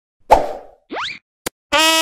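Cartoon intro sound effects: a soft thudding plop, a quick rising swoop and a sharp click. Near the end a bugle-like brass horn starts a steady held note.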